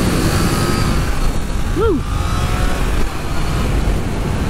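Learner-approved Triumph Trident 660's three-cylinder engine pulling hard at road speed under heavy wind rush on the rider's microphone. About two seconds in, the rider whoops once.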